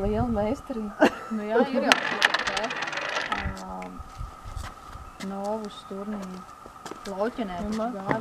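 Novuss game: a cue strikes a puck with a sharp click about a second in, a second knock follows, then a puck rattles on the wooden board in a quick run of clicks, like a coin settling, for about a second.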